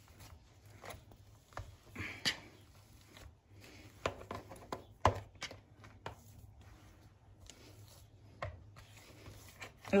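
Metal potato masher pressing boiled potatoes and carrots in a plastic bowl: quiet, irregular mashing strokes and clicks, with a sharper knock about five seconds in.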